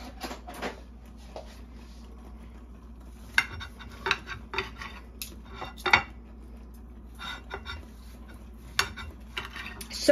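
Knife and fork clinking and scraping on a ceramic plate while slicing a cooked pork tenderloin, in scattered strokes with sharper clicks about three and a half and six seconds in.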